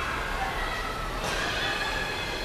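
Street ambience: distant voices calling out over a steady low rumble.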